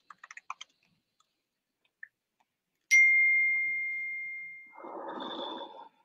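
A single clear ding, struck sharply about halfway through and fading away over about two seconds. A short muffled noisy burst with a faint higher tone follows near the end, and a few faint clicks come at the start.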